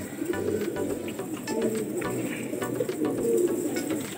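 A flock of domestic pigeons cooing, several low coos overlapping and rising and falling in pitch.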